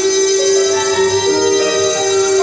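Instrumental backing music of a gospel song with no singing: held notes that move to a new pitch every half second or so, over a plucked-string part.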